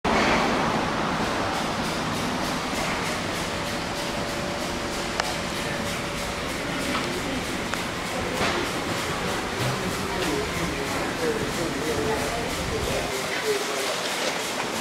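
Steady background noise with faint, indistinct voices that become a little clearer in the second half.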